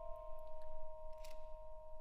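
Two notes on a Yamaha vibraphone ringing on steadily, their metal bars sustaining after being struck, with a few faint clicks in the first second or so.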